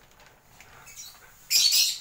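A lovebird's single shrill squawk, loud and brief, about one and a half seconds in, over faint rustling of a plastic bag being handled.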